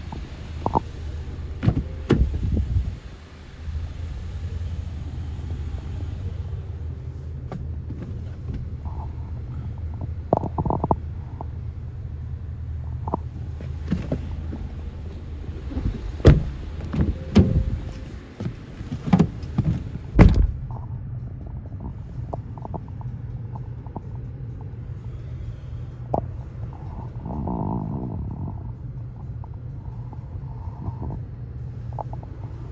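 Handling noise from a handheld camera being carried around a car: a steady low rumble with scattered knocks and clicks, and one sharp clack about twenty seconds in.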